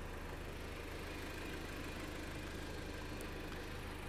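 Jeep Patriot's four-cylinder engine idling steadily, a low even rumble.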